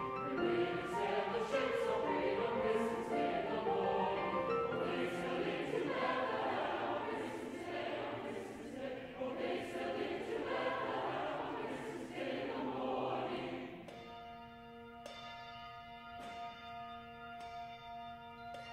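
A mixed choir singing; the singing ends about fourteen seconds in. Tubular chimes are then struck a few times, each note ringing on.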